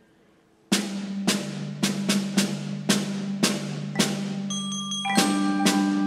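A percussion ensemble of marimbas and glockenspiel starts playing after a brief silence. Mallet strokes come in a steady stream over held low notes, and bright ringing high notes join about five seconds in.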